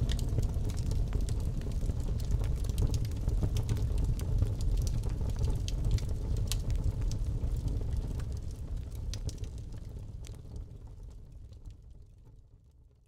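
Recorded fireplace ambience: a wood fire crackling, with scattered sharp pops over a low rumble and no harp playing. The fire sound fades out gradually over the last few seconds.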